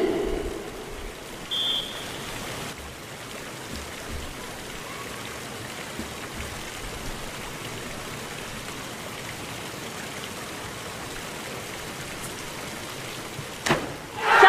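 Steady hiss of a hushed diving venue heard through a TV broadcast, with a short high whistle about one and a half seconds in, the referee's signal to begin the dive. Just before the end comes a brief sharp splash as the diver enters the water from the 10 m platform.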